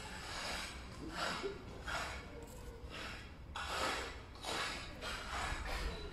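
A person breathing close to the microphone: short hissy breaths in and out, about one a second, over a low steady hum.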